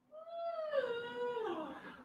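One long whining call, about two seconds, that holds its pitch and then slides slowly downward.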